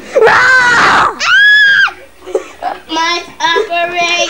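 A child screaming: two loud, high-pitched shrieks in the first two seconds, the second held steady before it falls away. Shorter, choppy vocal sounds follow to the end.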